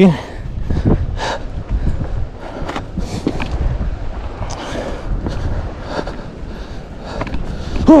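Footsteps scuffing and knocking irregularly across loose riprap rocks, over a steady low rumble of wind on the microphone.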